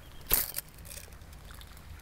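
A bait catapult fired once, a short sharp release about a third of a second in, sending a pouchful of floating dog biscuits out as free bait.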